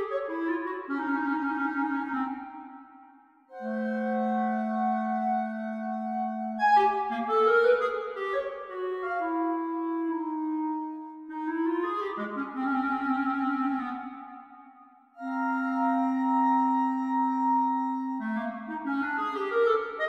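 Solo clarinet playing a free-tempo fantasia: quick flourishes and runs that die away almost to nothing twice, each time followed by a long held low note, then livelier figures near the end.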